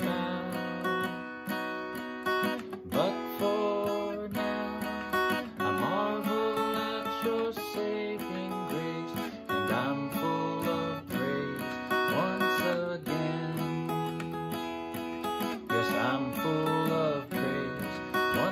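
Steel-string cutaway acoustic guitar strummed steadily through a chord progression, an instrumental passage with no singing.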